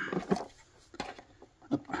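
A few light plastic knocks and clicks as a charging hub is handled and seated onto the top of a battery's plastic case, with one sharp click about a second in.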